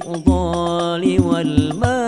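A male voice sings a sholawat line in Arabic over banjari-style frame drums (rebana), with sharp, regular drum strikes and a deep bass hit about a quarter second in.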